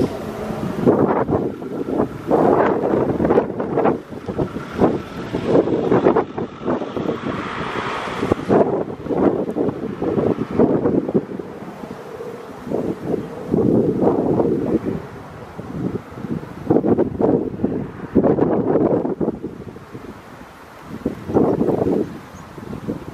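Wind buffeting the microphone in irregular gusts, rising and falling throughout.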